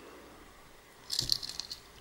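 Christmas baubles and their plastic packaging being handled: a faint, brief crisp rattle about a second in, after a quiet start.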